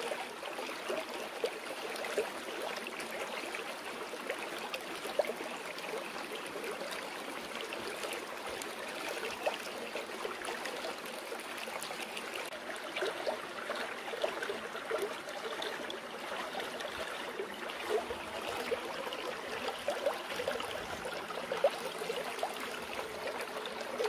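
Running water babbling steadily, with many small gurgles and splashes, a few of them louder than the rest.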